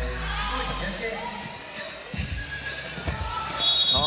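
Basketball bouncing on a hard court amid players' voices, ending in a short, steady blast of a referee's whistle for a foul.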